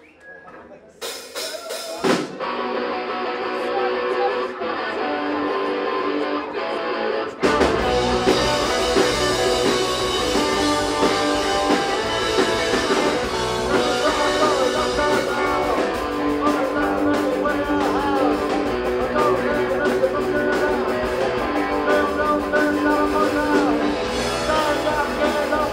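Live punk rock band starting a song: an electric guitar plays alone for a few seconds, then the drum kit and the rest of the band come in suddenly about seven and a half seconds in and play on at full volume.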